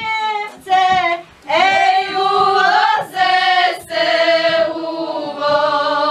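Group singing of a folk song, led by a woman's voice, in loud sung phrases with short breaks between them. A fiddle and a double bass accompany it.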